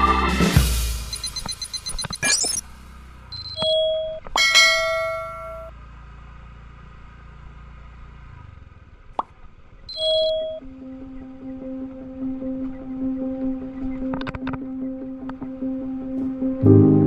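Sound effects of a subscribe-button animation over background music: a swoosh near the start, then pops and short chime-like dings about four seconds and ten seconds in.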